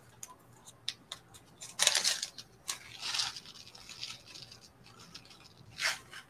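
A small zip-top plastic bag of seed beads crinkling and rustling as it is opened and handled, in several short bursts, with a few light clicks of beads.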